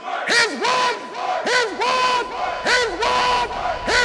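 Many loud shouting voices, overlapping calls that each rise sharply and hold a high note, several a second.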